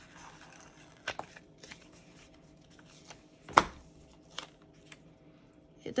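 Paper handling as a gold-foil planner sticker is peeled from its sticker-book sheet: faint rustling with a few small clicks, and one sharper, louder click about three and a half seconds in.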